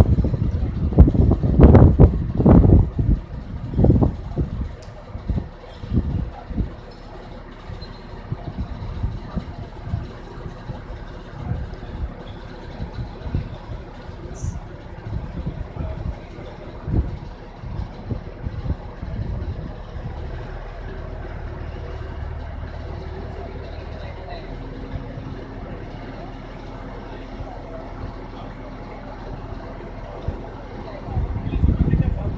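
Crane engine running steadily as it hoists a precast concrete column from lying flat to upright. Loud low knocks and bumps come in the first few seconds, and the engine settles into a steady hum in the last third.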